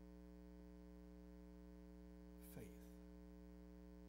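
Quiet, steady electrical mains hum in the microphone and recording chain, with one brief man's vocal sound, a short falling 'uh', about two and a half seconds in.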